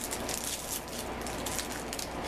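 Soft rustling and scratchy crackling from handling objects close to the microphone, a run of many short rough sounds, over a faint low steady hum.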